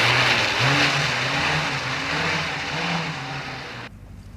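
A car engine revving, its pitch rising and falling over a loud rushing noise; the sound fades in the later seconds and cuts off suddenly just before the end.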